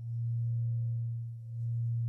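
Low, steady electronic drone that swells and fades in a slow pulse a little over a second long, with faint higher tones above it: the background tone laid under the spoken lessons.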